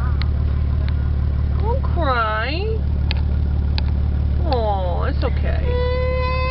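Steady low drone of a car running, heard from inside the cabin. Over it, a high wordless voice swoops up and down about two seconds in and again near five seconds.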